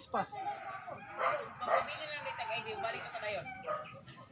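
People's voices talking, with a dog barking.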